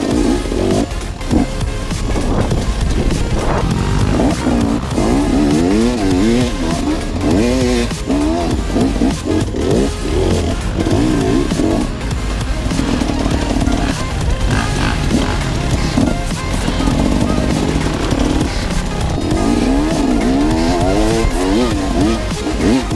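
Enduro motorcycle engine revving up and down over and over as the bike is ridden along a rough forest trail, its pitch rising and falling every second or so, with a couple of brief spells held at steady revs.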